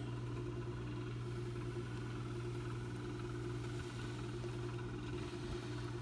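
A steady low mechanical hum with a few held low tones, even and unchanging throughout.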